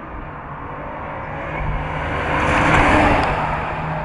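Ringbrothers' 1948 Cadillac coupe restomod, built on Cadillac ATS-V running gear, driving past: engine and road noise growing louder to a peak nearly three seconds in, then easing as it pulls away.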